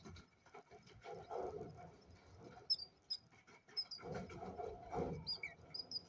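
A five-day-old cockatiel chick giving several short, high peeps in the second half, among bouts of soft rustling in the wood-shaving nest bedding.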